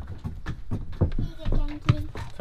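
Scattered small clicks and knocks as screws are located by hand in the electromechanical brake on a mobility scooter's motor, with a short voice sound near the end.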